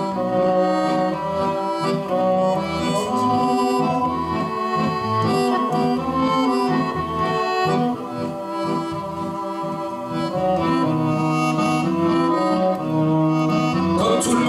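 A live band plays an instrumental passage of a song, with sustained melody notes over a moving bass line and drums.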